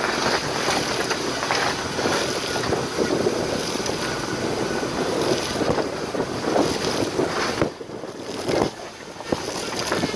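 Wind buffeting the microphone of a camera mounted outside a vehicle driving on a gravel road, mixed with tyre and road noise and scattered knocks. The rush drops off for a couple of seconds near the end.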